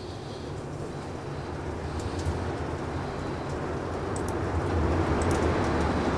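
Low rumble of an Atlas V rocket's RD-180 engine in powered ascent, growing steadily louder.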